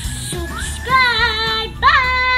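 Music with a child's singing voice: a few short sung notes, then a long held note with vibrato about halfway through, and a new note starting near the end.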